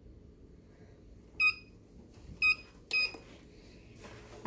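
Heat press timer sounding three short, high electronic beeps, the first two about a second apart and the third half a second after: the signal that the 45-second press cycle at 380 degrees is done.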